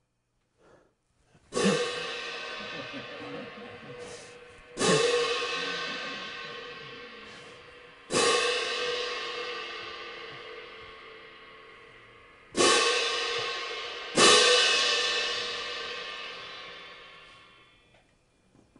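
A pair of hand-held crash cymbals clashed five times and left to ring, each crash fading slowly over several seconds. The first comes about a second and a half in, and the last two come close together near the end. This is the cymbal part of a concert-band piece played on its own.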